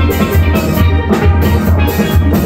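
Steel band playing: steel pans ringing out a melody over the deep bass pans, with a strong low beat about twice a second.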